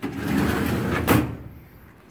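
Steel filing-cabinet drawer sliding along its runners for about a second, then shutting with a single metal clank that rings off.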